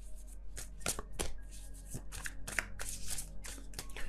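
Tarot cards being shuffled by hand: a run of quick, irregular card snaps and flicks, with faint background music under them.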